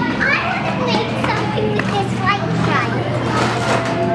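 Several young children chattering and calling out over one another in high voices, with a steady low hum underneath.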